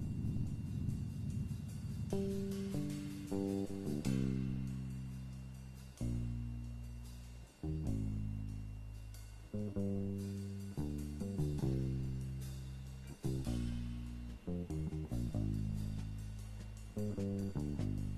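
Jazz recording of a plucked double bass playing a solo line: single low notes, each struck and left to ring and fade, some short and some held for a second or two.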